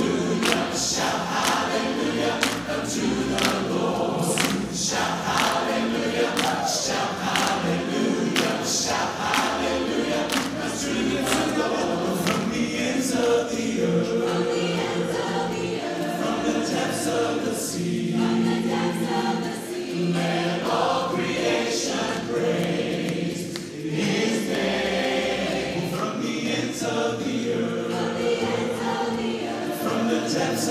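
A cappella vocal ensemble of men and women singing in harmony into microphones, with a regular percussive beat running under the voices.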